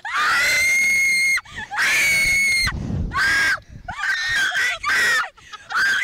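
Two women screaming on a Slingshot reverse-bungee ride, a string of loud, high screams. The two longest come in the first three seconds, followed by shorter ones.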